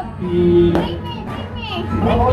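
Excited voices, a child's among them, over music playing in the room.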